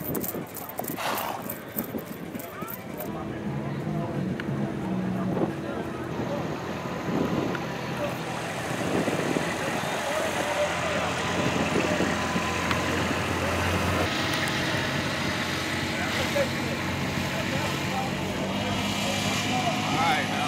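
A horse's hooves clopping at a walk for the first few seconds, then the diesel engine of a Kubota RTV-X1140 utility vehicle running steadily from about three seconds in, with voices in the background.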